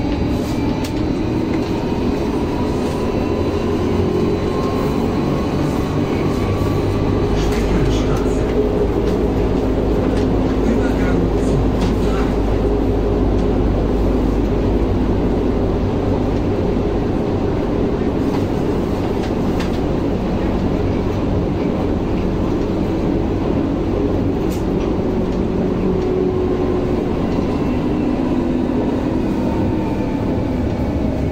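Berlin U-Bahn train heard from inside the car, accelerating out of a station: the traction motor whine rises in pitch over the running rumble, then the train runs steadily through the tunnel. Near the end the whine falls again as the train brakes.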